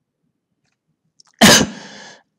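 A person sneezing once, sudden and loud, about one and a half seconds in, after near silence.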